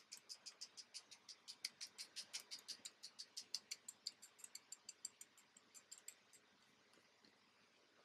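Faint, rapid taps of a hair-filler shaker bottle being tapped over the scalp, about six a second, stopping about six seconds in.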